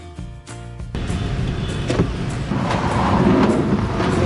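Background music that stops about a second in, giving way to the steady low rumble of a car driving, heard from inside the cabin.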